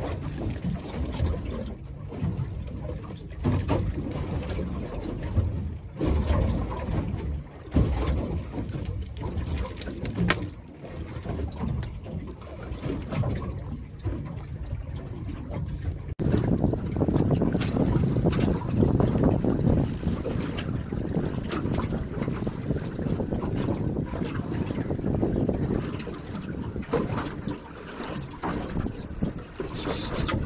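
Wind noise on the microphone and water slapping around the hull of a small fishing boat sitting with its engine off, with a few sharp knocks now and then.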